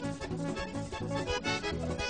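Vallenato band playing live, with a diatonic button accordion leading an instrumental passage over a steady bass line and rhythmic percussion.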